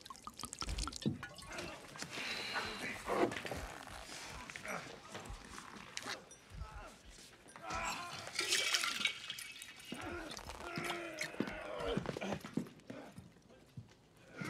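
Bourbon poured from a stoneware jug into a small glass, with indistinct voices and small clinks around it.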